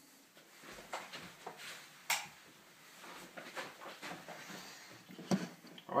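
Handling noise as the camera is moved and set down: rustling with scattered clicks and knocks, the sharpest knock about two seconds in.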